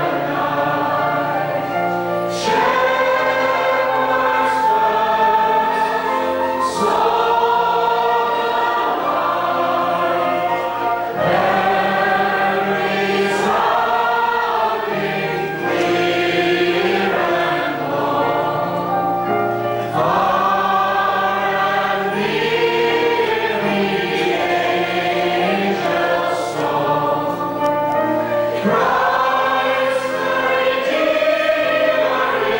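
Small men's choir singing a hymn, phrase after phrase with short breaks between lines.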